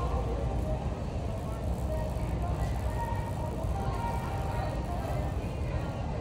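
Busy store ambience: a steady low rumble with indistinct background voices of shoppers.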